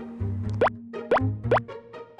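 Light background music with a steady bass line, over which three quick rising 'bloop' sound effects play about half a second apart, as a comic pause effect.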